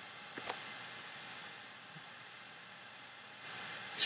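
Two quick computer mouse clicks about half a second in, over a faint steady hiss.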